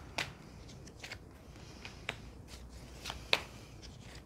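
Tarot cards being handled and laid down on a table: a few short, sharp card clicks and flicks, the loudest a little past three seconds in.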